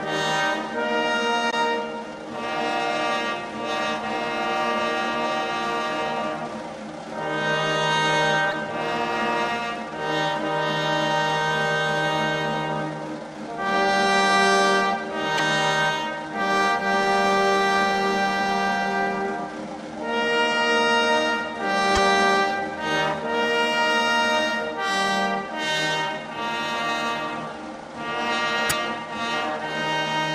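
Slow, solemn brass music: long held chords from trombones and other brass, moving to a new chord every second or two.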